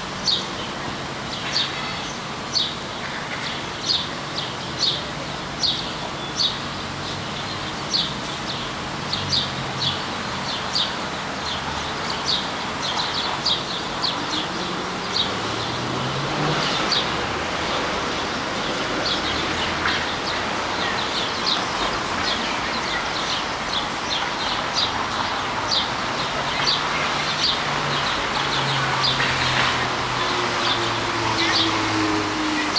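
House sparrows chirping, short high cheeps repeated about once or twice a second, over a steady background hiss.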